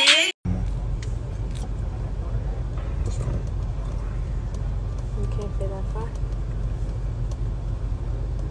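Steady low rumble of a moving car heard from inside the cabin, starting just after music cuts off at the very start. Faint voices come through briefly about five seconds in.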